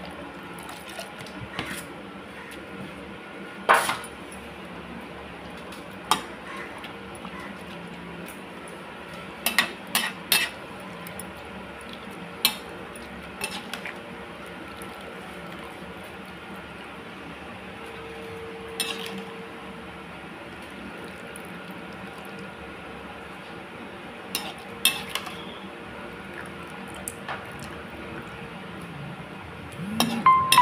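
Scattered clinks and knocks of steel utensils (a strainer spoon against steel pots and a plate) while boiled noodles are handled and rinsed, over a steady faint background hiss.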